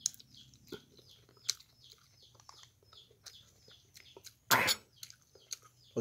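Small birds chirping over and over, a short falling chirp about three times a second, with a few light clicks. One loud cough a little past halfway is the loudest sound.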